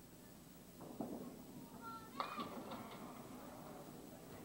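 Faint background chatter of spectators in a bowling alley, with a brief sharp knock about two seconds in.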